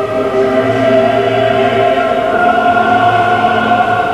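Choral background music: voices holding long, sustained notes.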